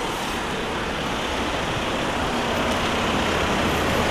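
Road traffic noise from cars driving past, a steady rush of engines and tyres that grows slowly louder as a van draws up close alongside.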